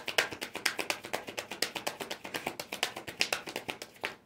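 A Light Seer's Tarot deck being shuffled by hand: a fast, uneven run of card clicks and slaps, many to the second.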